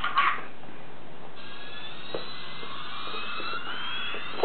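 Toy jumbo jet's electronic jet-engine sound effect: a thin high whine that rises steadily in pitch, over a hiss, starting about a second and a half in.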